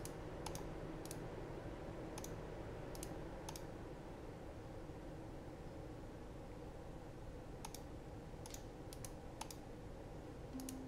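Computer mouse clicks, single and scattered, several in the first few seconds, then a quiet gap, then a few more near the end, over a steady low hum.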